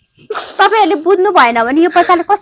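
A person crying aloud: about a third of a second in, a sharp, hissing intake of breath, then a loud, wavering, drawn-out crying voice.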